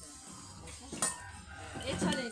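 Faint background voices of people talking, with low music in the background.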